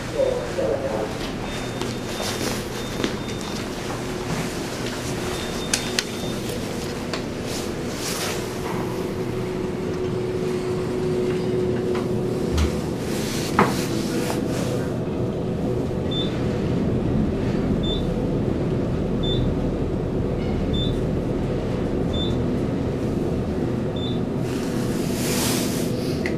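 Steady hum inside a ThyssenKrupp elevator car, with a low rumble swelling in the second half. Through that part a short high beep repeats about every second and a half, and a few clicks and knocks stand out.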